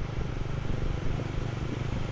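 Motor scooter engine running steadily while riding, a low hum under a haze of road noise.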